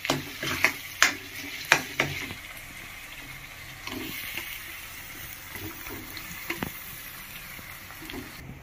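Metal ladle clinking and scraping against a metal kadhai while stirring frying tomato masala, with about five sharp strikes in the first two seconds. After that the masala sizzles steadily, with a few soft knocks as boiled potatoes go into the pan.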